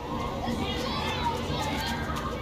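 Several children's voices shouting and calling over one another while they play outdoors.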